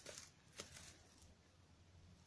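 Faint rustling of dry leaf litter underfoot and by hand at the foot of a poncho tent: two brief rustles in the first second, then near silence.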